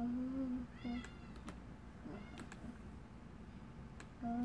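A young child's wordless vocalizing: a short held hum at the start and a brief high squeak about a second in. A few light plastic clicks come from rings sliding on a toy rod.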